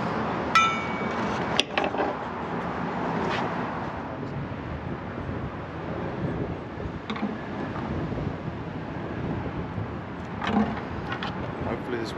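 Compressed air from a scuba tank hissing steadily through a coiled air hose into a large inflatable boat fender. A ringing clink about half a second in and a few knocks of the hose fitting on the valve.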